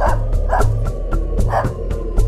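A small dog yipping in three short, quick barks over background music with a steady beat.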